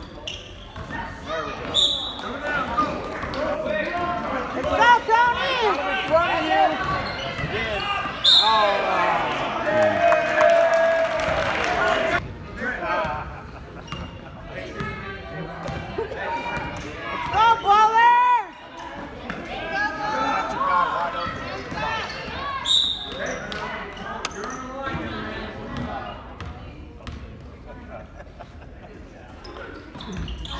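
A basketball dribbling and bouncing on a hardwood gym court, mixed with indistinct shouts from players and spectators, all echoing in a large gymnasium.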